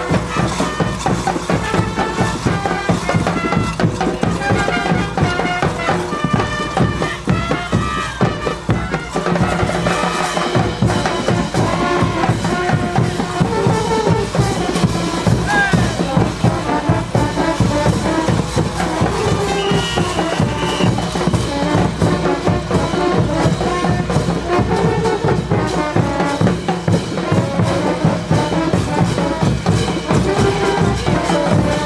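Live brass band playing caporales dance music: brass instruments over a steady beat of large bass drums.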